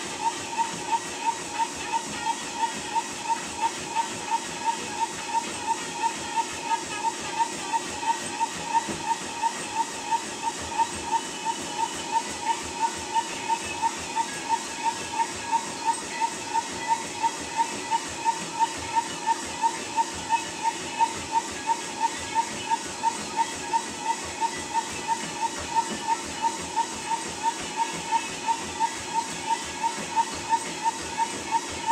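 Treadmill in use: a steady motor whine that pulses with each stride, under the thud of running feet striking the belt nearly three times a second, evenly paced.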